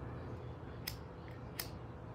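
A cigarette lighter being flicked: two sharp clicks of the spark wheel a little under a second apart, the second near the end, over a low steady background hum.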